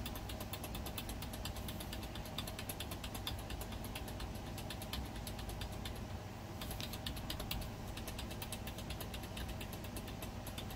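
A computer keyboard's F8 key tapped rapidly and repeatedly, about five clicks a second with a short pause just past halfway, to call up the boot menu during the PC's startup. A steady low hum runs underneath.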